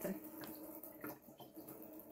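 Water running steadily in a thin stream from a hand-pumped, pressurised Boxio Wash shower head into a plastic crate, faint, with a couple of small clicks.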